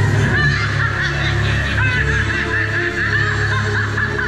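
Amplified show soundtrack: music with a squawky, rapidly warbling high voice or sound effect over it.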